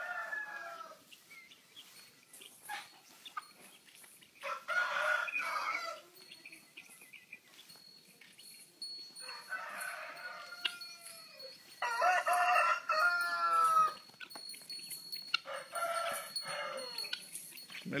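A rooster crowing about four times, a few seconds apart, each crow dropping in pitch at its end.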